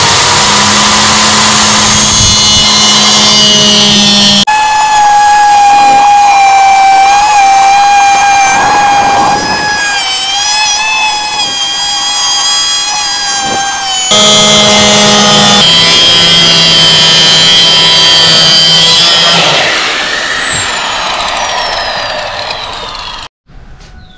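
Handheld electric circular saw (a small marble-cutter type) cutting through an acrylic (mica) sheet. The motor's whine is loud and continuous, and its pitch drops and wavers as the blade is pushed into the cut. It stops abruptly near the end.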